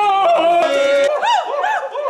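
Voices singing loudly, without words: a held note that bends in pitch, then rapid yodel-like whoops rising and falling about three times a second from about halfway through.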